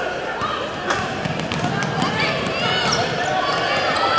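Game sound in a basketball gym: indistinct voices of players and spectators throughout, with a basketball bouncing on the hardwood court and a sharp knock about a second in.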